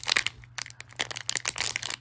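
A silver foil blind-bag wrapper crinkling and tearing as fingers pick it open, in a run of irregular crackles.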